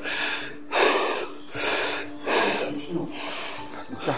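A man breathing hard in a series of heavy gasps and exhalations, several in a row, in pain from a severe headache.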